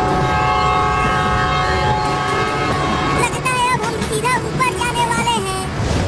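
Train horn sounding one long, steady chord for about three seconds, then fading out, over low rumbling and background music.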